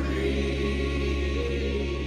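Background music: a choir singing long held notes over a steady low tone.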